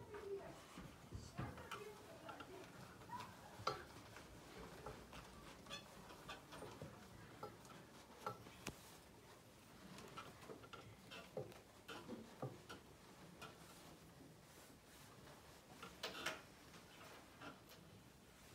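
Near silence in a small room: faint handling of a cloth flag being folded, with scattered small clicks and taps and brief soft murmurs from people nearby, a little louder about sixteen seconds in.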